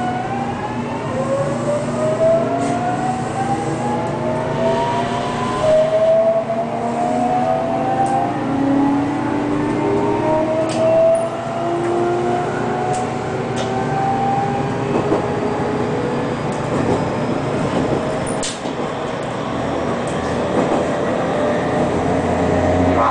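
JR Kyushu 813 series electric train's inverter and traction motors whining as it accelerates away from a station: a series of tones rising in pitch and restarting several times over the first fifteen seconds, then settling into steady running noise with a few rail clicks, heard inside the cab.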